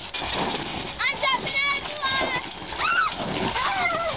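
Children squealing several times in high voices while water from a garden hose splashes onto a wet trampoline mat.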